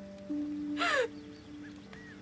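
A woman's sob, one short breathy cry falling in pitch about a second in, over sustained low notes of a music score.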